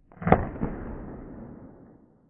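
A single shot from a 1911 pistol: a sharp crack, then a smaller knock a moment later, ringing out for over a second in the reverberant indoor range.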